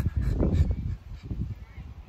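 Wind rumbling on a phone's microphone, with handling noise as the phone is moved, and a brief voice-like sound about half a second in. The rumble eases after about a second to a quieter steady wind noise.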